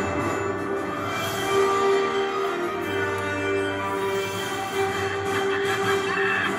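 Theme music playing from a television over an opening title sequence, held chords that change every second or so.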